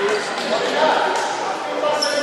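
Voices of players and spectators echoing around an indoor basketball gym, with a basketball bouncing on the hardwood court.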